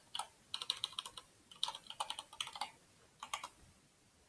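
Computer keyboard typing: several quick bursts of keystrokes with short pauses between them.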